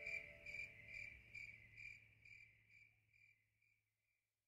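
Faint, regular chirping of a cricket, about two chirps a second, fading out about three seconds in. The last of a soft musical chord dies away at the start.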